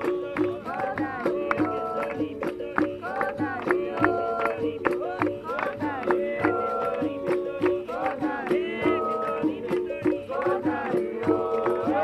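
Capoeira roda music: berimbau musical bows playing a steady repeating two-note rhythm with a rattle and a pandeiro, while voices sing along.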